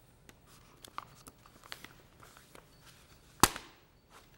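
Sheets of script paper handled close to a clip-on microphone: scattered small rustles and clicks, then one sharp, loud knock about three and a half seconds in.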